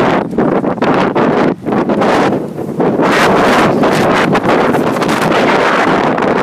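Loud wind buffeting the microphone in gusts, with a couple of brief dips in the first three seconds.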